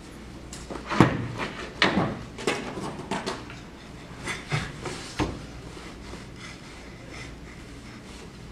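Irregular knocks, creaks and rustling from a person shifting about on a wooden bed frame and handling a plush toy, clustered in the first five seconds and dying away after.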